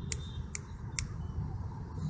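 Three short, sharp clicks about half a second apart over a steady low rumble.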